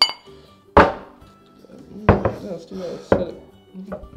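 Beer glasses clinking together in a toast, with a brief ringing note, followed by four sharp knocks about a second apart.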